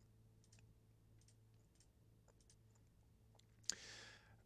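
Near silence over a faint hum, broken by a scatter of faint, short clicks typical of a computer mouse being clicked; a sharper click with a brief hiss comes near the end.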